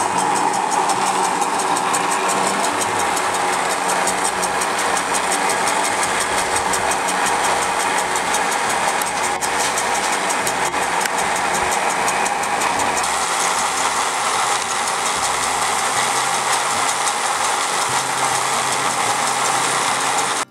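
Electric-powered cargo cable car running along its cable: a steady, loud mechanical rattle with a fast, even ticking from its drive and the pulleys running on the wire rope.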